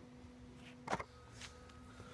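A faint steady hum with a single sharp knock about a second in, plus a few weaker ticks around it.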